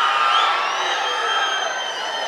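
Large crowd cheering, with many long, shrill high-pitched calls overlapping; it swells about half a second in and eases toward the end.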